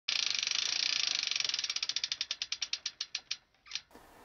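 Bicycle freehub ratchet ticking as a spun wheel coasts to a stop: rapid clicks that slow steadily for over three seconds. A brief swish comes near the end.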